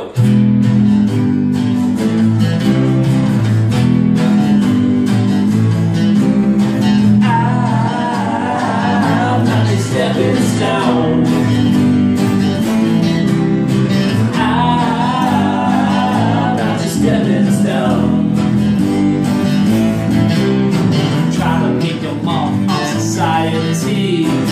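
Live rock band intro played on two strummed acoustic guitars and an electric bass, a steady loud groove with a wavering higher melody line coming in twice over it.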